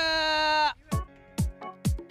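A bleating cry, wavering in pitch, that cuts off sharply less than a second in, followed by a kick-drum beat of about two thuds a second as a dance track starts.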